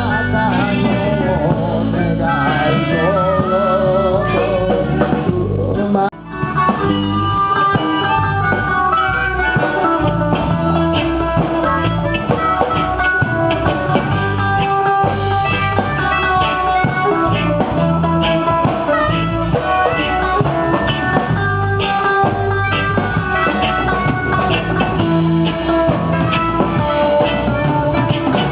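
Live band music with electric guitars, bass and drum kit, with a singer's wavering vocal line in the first few seconds. The music breaks off for an instant about six seconds in, then the band plays on.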